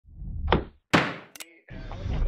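Intro sound effects for a logo animation: a swelling whoosh that peaks about half a second in, then a sharp, heavy thunk about a second in that rings out briefly, followed by a short click.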